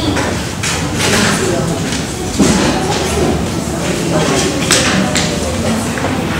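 Classroom chatter: many students talking at once in a room with some echo, with a few sharp knocks scattered through it.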